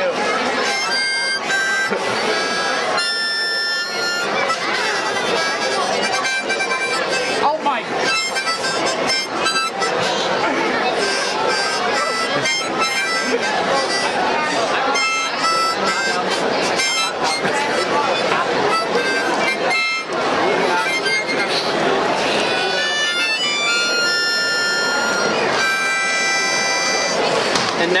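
Small harmonica blown through the nose, sounding a run of held notes and chords that shift in pitch without a clear tune.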